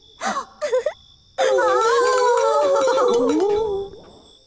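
A cartoon ghost's high voice: two short gliding cries, then after a pause a long wavering moan.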